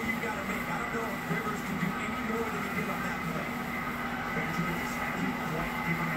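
Steady hum of an aquarium air pump and filter running, with faint, muffled voices from a television underneath.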